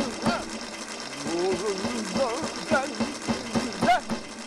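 A man laughing hard, in a run of short bursts with wavering pitch.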